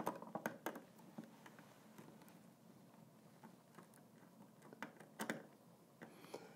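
Faint clicks and taps of wire leads with spade terminals being handled and pushed onto the terminals of a furnace control board, a cluster in the first second and a few more near the end.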